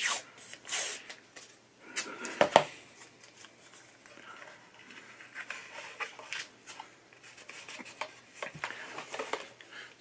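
Painter's tape peeled off its roll with a short rasp, then a few sharp clicks and knocks, the loudest about two and a half seconds in, and quieter rubbing and handling as the tape is pressed down inside a wooden box.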